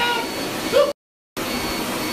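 Steady whirring hiss with a faint high whine from a laser hair-removal machine running. It cuts out to silence for about half a second just before halfway, then resumes.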